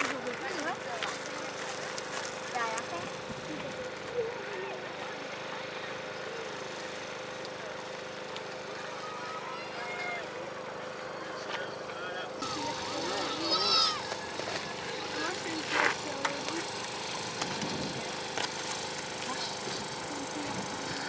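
Indistinct background voices of people talking, with no clear words, over a faint steady hum.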